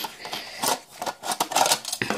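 Akai car radio's sheet-metal mounting cage scraping and clicking against the radio's metal chassis as the two are pulled apart: a quick, irregular run of metallic clicks and rattles, bunched about two-thirds of a second in and again through the second half.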